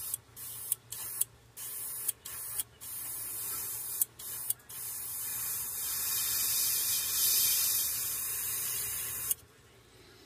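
Airbrush spraying paint in a run of short hisses, the trigger let off and pressed again about seven times, each restart with a brief louder spurt. Then one longer steady spray of about four seconds that stops shortly before the end.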